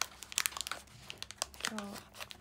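Plastic packaging of a pack of store-bought chocolate cookies crinkling and crackling in the hands as it is handled, in irregular sharp crackles.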